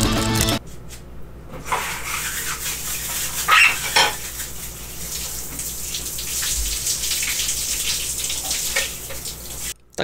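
Water running at a sink while an aluminium bar is washed clean, with scattered clinks and knocks of the metal and a louder clatter about three and a half to four seconds in. Music carries over for the first half second.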